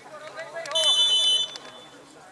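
Referee's whistle: one short, sharp blast, the signal for the penalty kick to be taken.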